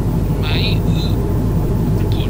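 Steady low drone of an airliner cabin in cruise flight. Brief higher-pitched sounds occur about half a second and a second in.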